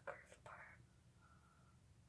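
Brief faint whispering in the first second, then near silence with room tone.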